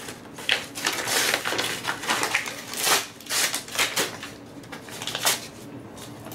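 Brown paper wrapping being torn and crumpled off a package, crinkling and rustling in irregular bursts.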